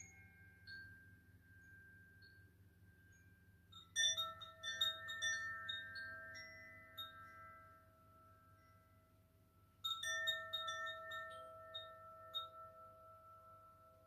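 Hanging chimes set swinging by hand: two bursts of quick, bright tinkling about four and ten seconds in, each leaving a few clear tones ringing out and fading, over a faint low hum.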